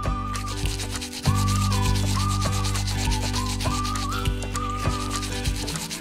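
A toothbrush scrubbing a baby doll's teeth in rapid back-and-forth strokes, over background music with a simple melody and a steady bass that pauses briefly about a second in.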